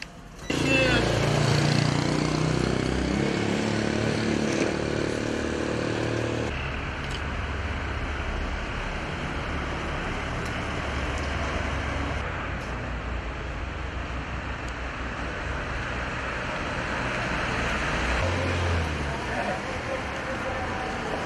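Street traffic: road vehicles with engines running and tyres on the road as they drive past, among them a motorhome.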